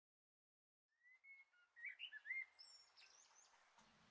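Faint bird chirps: a cluster of short, quick rising and falling whistled notes between about one and three seconds in, heard as an effect at the start of a karaoke backing track.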